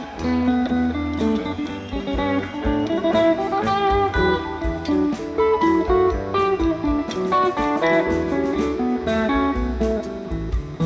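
Live rock band playing without vocals: guitar lines over bass guitar and a steady drum beat.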